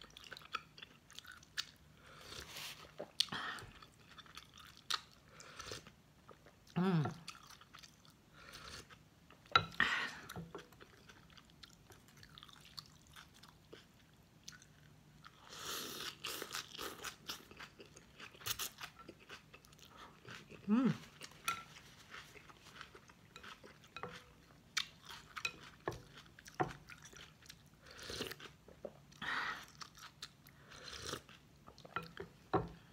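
A person eating pho close to the microphone: chewing a fish ball, with slurps of rice noodles and broth, a noisy slurp about halfway through, and a couple of short hummed 'mm's.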